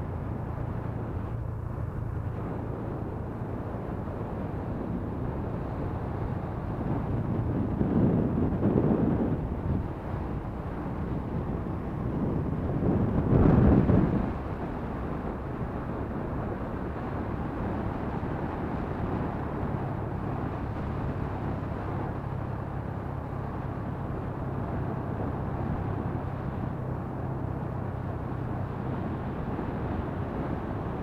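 Motor scooter engine running steadily at cruising speed, with road and wind noise on the microphone. Two louder rushes of noise rise and fall about 8 and 13 seconds in.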